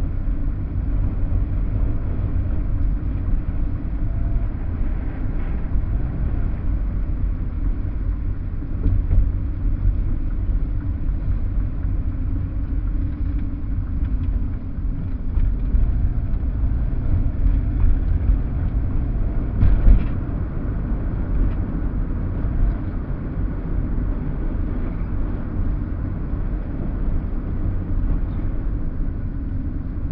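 Car driving on city streets: a steady low rumble of engine and tyre noise inside the cabin, with a single brief knock about two-thirds of the way through.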